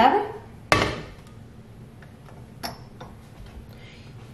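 A cooking pot set down on the stovetop with one sharp knock that rings briefly, followed by a smaller clink.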